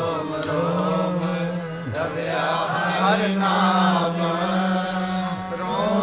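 Sikh kirtan: the lead singer and the congregation chanting a shabad together, over a harmonium's steady note and a tabla keeping a regular beat.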